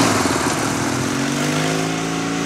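Motorcycle engine running as the bike pulls away, its note dipping briefly and then holding steady while slowly growing fainter.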